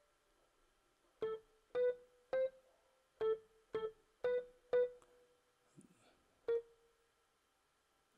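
A piano-like software instrument in FL Studio picking out a melody one note at a time as keys on the piano roll are clicked. There are about eight short notes, close together in pitch, spaced a half second to a second apart, with a longer gap before the last one.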